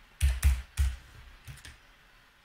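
Typing on a computer keyboard: several separate keystrokes, the loudest in the first second and a few fainter ones after.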